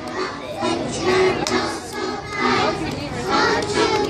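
A group of children singing a Christmas carol together, mixed with crowd chatter.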